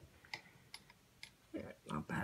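A few faint, light clicks of small glass beads knocking together as a strand of fire-polish beads is handled.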